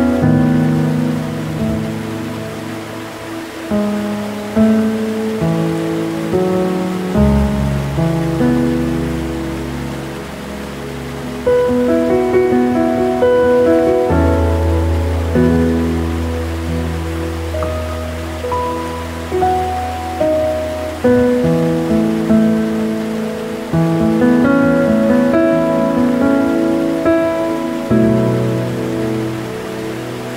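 Slow, gentle piano music: single notes and chords that strike and fade, with held low bass notes, over a steady hiss of rushing water.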